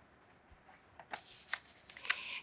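Faint rustling and a few soft crinkles of a sheet of paper being rolled up into a tube, mostly in the second half.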